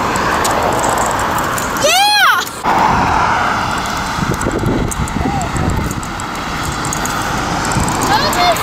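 Steady noise of road traffic passing on a main road, with one short high-pitched squeal from a girl's voice about two seconds in.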